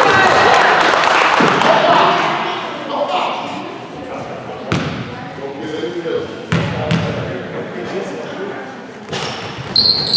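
A basketball bouncing a few separate times on a hardwood gym floor as a free-throw shooter dribbles, echoing in the large hall. Loud voices of spectators and players fill the first two seconds or so, then die down.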